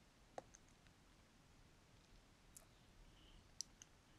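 Near silence with a few faint, sharp clicks as a metal crochet hook is worked through yarn. The clearest clicks come about half a second in and near the end.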